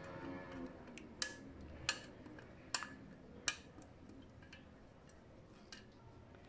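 Faint, sparse clicks, about five sharp taps a half-second to a second apart, from a spoon knocking against the tray while a soft layer of milk pudding is spread and smoothed. Faint background music fades out in the first moment.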